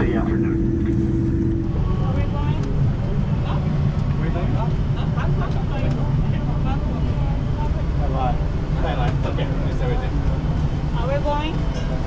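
Airliner cabin noise while taxiing: a steady low rumble with a held tone, which cuts off abruptly about two seconds in. It gives way to a steady low hum and the indistinct chatter of passengers and crew crowding the galley by the aircraft door as they deplane.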